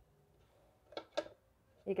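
Near-quiet room tone, then two short vocal sounds from a woman about a second in, and she starts speaking near the end.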